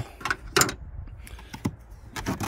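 A few light, separate clicks and taps, handling noise as a hand moves around the plastic scuttle trim and rubber seal in a car's engine bay.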